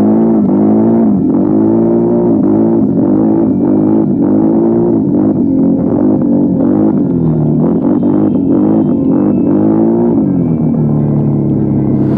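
CFMOTO CForce ATV engine and exhaust under throttle while the quad accelerates, the pitch swelling up and falling back about once a second. It settles to a lower, steadier note around seven seconds in and climbs again near ten seconds.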